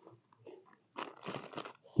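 Hands scraping and pressing dry, sandy soil into a small planting bag: faint gritty crunching in short scattered scrapes, the longest about a second in.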